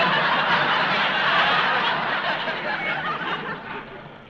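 Studio audience laughing, loudest at first and dying away over about four seconds.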